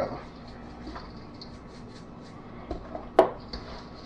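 Quiet kitchen handling sounds: a seasoning shaker being shaken over raw chicken in a stainless steel bowl, with faint light ticks. A single sharp clink comes about three seconds in.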